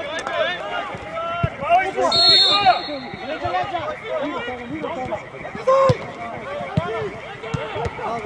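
Players shouting and calling to each other on a football pitch, several voices at once, with a referee's whistle blown once, about half a second long, a couple of seconds in.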